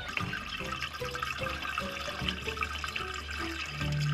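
Diesel exhaust fluid (urea solution) pouring from a plastic jug through a flexible spout into a motorhome's filler, a steady liquid flow under light background music.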